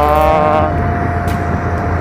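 Steady low rumble of a delivery rider's vehicle on the move over a wet road, with a man's drawn-out "uh" over it.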